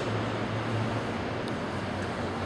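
Steady low rumble of road traffic, with a brief faint click about one and a half seconds in.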